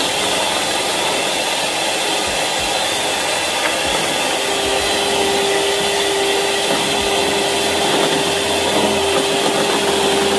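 Electric hand mixer running steadily, its beaters whisking egg and oil into mayonnaise in a plastic tub as the oil is added by the spoonful. A steady tone joins the motor hum about halfway through.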